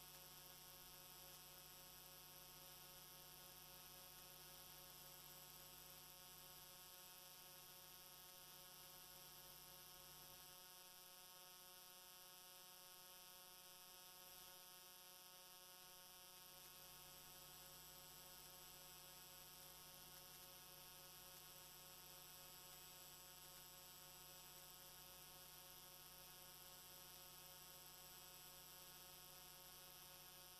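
Near silence, with only a faint, steady electrical hum.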